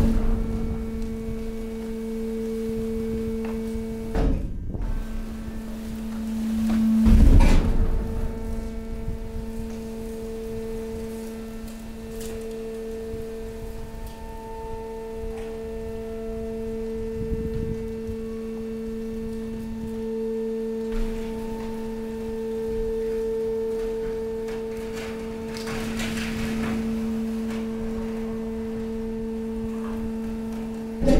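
Hydraulic pump of a stationary waste compactor running with a steady hum while the ram pushes mixed waste into the container. Louder bangs come near the start and about four and seven seconds in.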